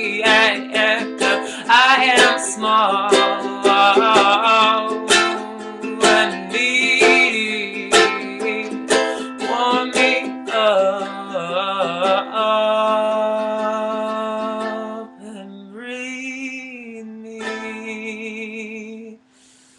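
Ukulele strummed in chords while a man sings along, his voice wavering with vibrato. About twelve seconds in, the strumming gives way to long held notes that grow quieter toward the end, closing the song.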